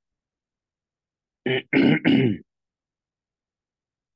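A man clearing his throat: three short bursts in quick succession about a second and a half in.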